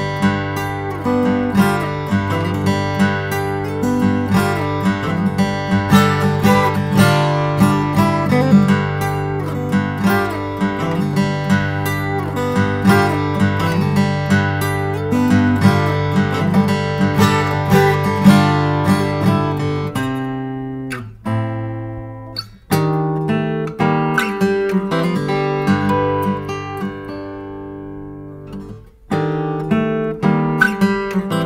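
Instrumental post-rock/folk music led by acoustic guitar, picked and strummed over a sustained low bass. About two-thirds of the way through it breaks off briefly twice, then thins and fades near the end before the playing comes back in.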